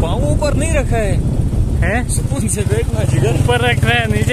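Motorcycle engine running steadily under way on a gravel track, with a person's voice rising and falling in pitch over it.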